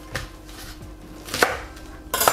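Chef's knife knocking on a wooden cutting board while trimming spring onion stalks: a light tap just after the start, then one sharp knock about one and a half seconds in.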